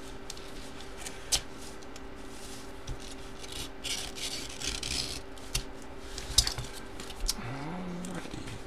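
A paper manila envelope being cut open with a blade and handled: the paper rustles and scrapes for a stretch in the middle, with scattered sharp clicks and taps, the loudest a little after six seconds.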